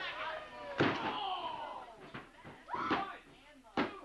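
A wrestler's body lands on the ring mat from a top-rope dive, a loud slam about a second in, among shouting crowd voices. Near the end come two sharp, evenly spaced smacks on the mat, the referee's hand slapping out a pin count.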